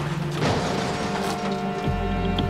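The noise of a vehicle skidding and crashing dies away about half a second in. A held chord of dramatic film-score music then takes over.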